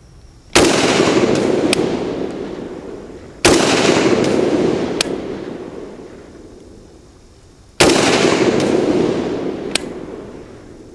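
Three shots from an AK-pattern rifle, a few seconds apart, each echoing and fading over about two seconds. This is slow, aimed fire for a five-shot group to zero the iron sights.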